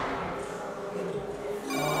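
An electronic telephone ring starts near the end, a steady trilling tone after a quiet stretch.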